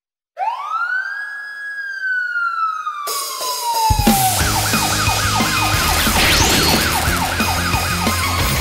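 Cartoon siren sound effect: one long wail that rises quickly and slides slowly down. About four seconds in, a song intro with a heavy beat starts under a fast-warbling siren.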